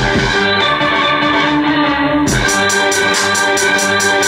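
Hip-hop beat played from an MPC sampler: a looped old-school sample of sustained keyboard chords over a drum track. A kick drum lands near the start and again about two seconds in, where steady hi-hats come in.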